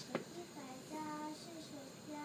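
A child's voice singing or chanting a drawn-out, held note about a second in, with a short wavering tail. A single sharp knock comes just at the start and is the loudest sound.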